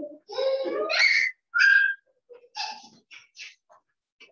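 A young child's high-pitched voice in several short bursts, the pitch sliding up and down, with brief silences between them, heard over a video-call link.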